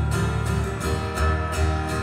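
Steel-string acoustic guitar strummed in a steady rhythm, held chords ringing between sung lines of a live song.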